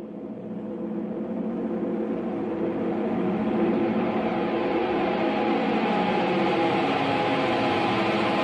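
A sustained droning wall of noise with several steady pitched tones underneath. It swells in loudness over the first few seconds, then holds level.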